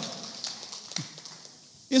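A pause in a man's amplified speech in a hall. His last word dies away in the room's echo, leaving faint room noise with one light tap about a second in, and he starts speaking again at the very end.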